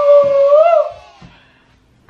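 A man's drawn-out 'woo!' shout, held on one pitch for about a second and lifting briefly at the end before it stops.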